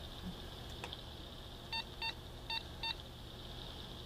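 Cell phone keypad beeping as buttons are pressed: four short, identical beeps, the first two close together about a second and a half in, the other two near three seconds in.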